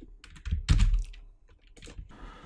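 Computer keyboard keys being pressed in a quick cluster about half a second in, with a few more single keystrokes near the end.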